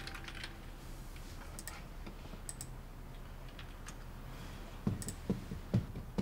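Light, scattered typing on a computer keyboard with mouse clicks. About five seconds in, a fast run of heavy thuds starts, about four a second, from someone jumping on the floor.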